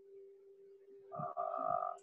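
A faint steady hum, then about a second in a man's voice holding a drawn-out hesitant "uhh" for most of a second.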